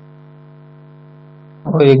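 Steady low electrical mains hum running under the recording, several fixed tones with no change. A man's voice starts again near the end.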